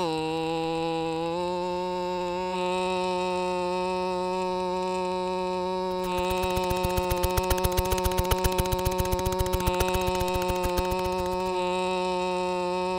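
A steady, buzzy held electronic tone. About halfway through, a fast run of clicks, roughly six a second, joins it and stops shortly before the end.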